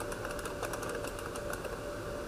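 Computer keyboard typing: a quick run of light keystrokes, several a second, over a steady faint hum; the keys stop near the end.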